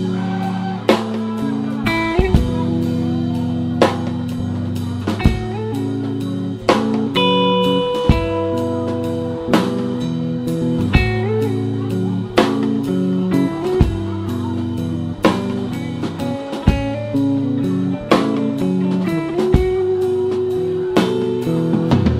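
Live rock band playing an instrumental passage: guitar lines over bass and a drum kit keeping a steady beat.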